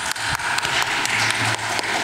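Audience applauding, a dense run of many separate claps.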